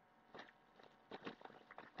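Near silence with a few faint, short ticks and rustles of packages being handled in a haul bag.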